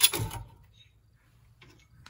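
A sharp clack of parts being handled, fading within half a second, then a few faint ticks near the end.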